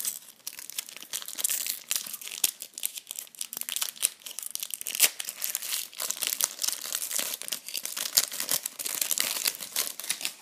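A foil booster packet of Panini Euro 2012 trading cards being torn open and crinkled by hand: a dense, irregular run of sharp crackles.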